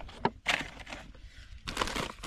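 Plastic bait packets rustling and crinkling as they are handled, in short bursts with a quieter stretch in the middle.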